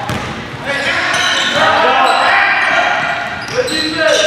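Live game sound from an indoor basketball court: a basketball bouncing on the hardwood floor, sneakers squeaking, and players' voices echoing in the gym.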